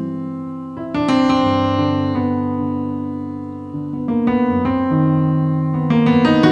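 Solo piano passage in a slow bolero, played on a digital piano: a sustained chord struck about a second in and another near four seconds, each ringing and fading, then a phrase of single notes.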